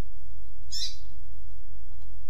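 A single short, high chirp from a double-collared seedeater (coleiro), one note of a tui-tuipia song recording, about three quarters of a second in, over a steady low hum.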